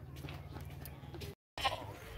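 A goat bleats near the end, right after a short break in the sound. Before that there is only a faint, steady low hum.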